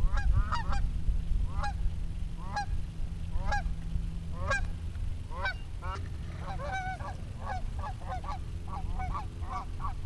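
A flock of geese honking, returning to the pond. The calls come singly about once a second at first, then many overlapping calls in the second half.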